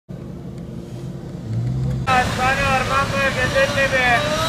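Road traffic with a minibus and a car driving past: a low engine hum that grows louder. About two seconds in, it cuts abruptly to street ambience with people's voices close by.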